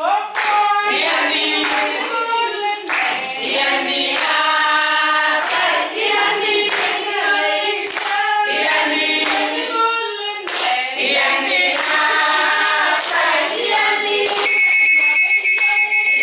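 A group of women singing together, clapping their hands in time. A high held note comes in near the end.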